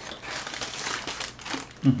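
Paper bag crinkling and rustling as it is handled, with a short hummed "mm-hmm" near the end.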